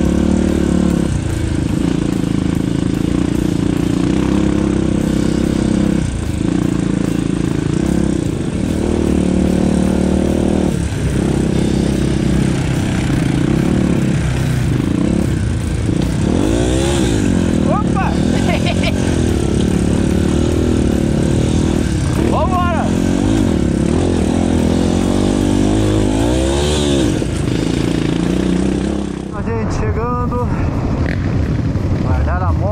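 Off-road motorcycle engine running under way on a dirt trail, heard from the rider's helmet camera. Its pitch rises and falls with the throttle several times in the second half, with a few brief drops in sound where the clips are cut.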